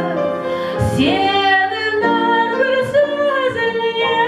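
A woman singing a Kazakh song into a microphone, with piano accompaniment, holding long notes.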